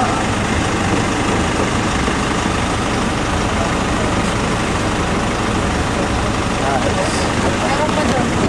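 Van engine idling steadily.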